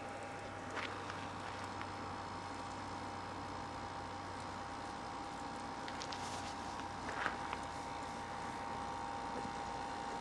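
Faint, steady evening outdoor ambience: a low hiss with a steady hum, and a couple of faint short chirps, one about a second in and one about seven seconds in.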